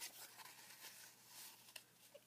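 Near silence, with a faint rustle of paper and a few soft ticks as a paper tag is handled and tucked into a page pocket.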